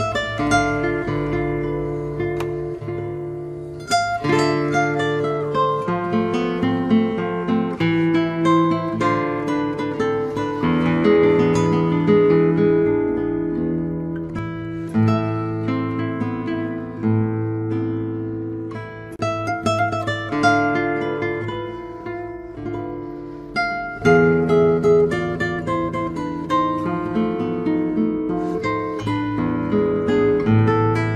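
Solo nylon-string classical guitar played with the fingers: a continuous piece of plucked melody over sustained bass notes and chords, with strong chord attacks about 4 seconds in and again near 24 seconds.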